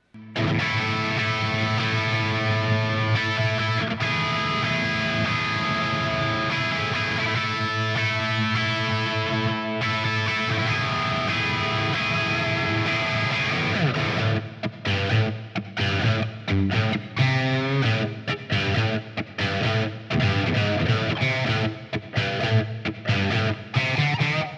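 Distorted electric guitar from a Telecaster-style guitar playing a riff: long ringing chords for about the first fourteen seconds, then a choppy run of short chords broken by brief gaps.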